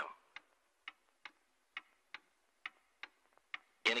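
Faint, steady ticking of a clock, about two ticks a second.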